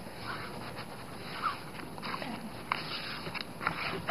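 Soft rustling and rubbing of paper and card under hands pressing and smoothing a freshly glued piece flat, with a few faint clicks.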